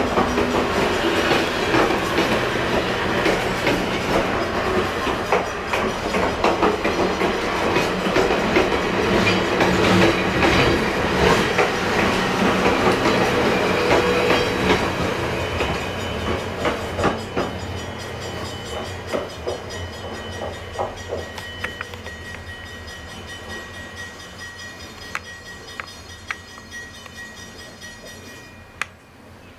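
Essex Clipper Dinner Train's Pullman passenger cars rolling past, steel wheels clicking over the rail joints, heard through the depot window. The sound stays strong for about half the time, then fades as the last car moves away, leaving fainter clicks.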